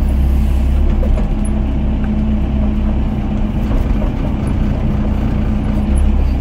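Doosan DX55 mini excavator's diesel engine running steadily with a deep, even drone, heard from the operator's cab as the boom and bucket work into a pile of broken rubble.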